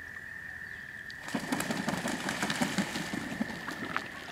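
Waterfowl beating their wings in flight: a rapid fluttering flap that starts about a second in and runs on, over a steady high-pitched whine.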